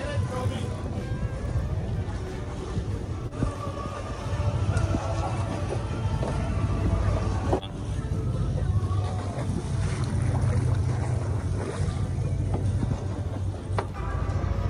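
Boat engine running with a steady low drone, getting louder about four and a half seconds in, with some wind.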